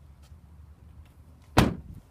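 A 2014 GMC Terrain's front door being shut, one solid slam about one and a half seconds in.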